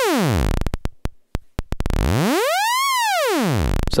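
Doepfer A-110 VCO sawtooth tone under deep, slow pitch modulation from a sine-wave LFO. The pitch slides down to a very low buzz that breaks into separate clicks in the first second or two, climbs smoothly to a high peak about three seconds in, then slides down again.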